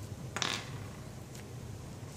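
Small test-kit parts being handled on a countertop: a short scrape about half a second in, as the plastic screw cap of the glass vial is handled and set down, then a faint click.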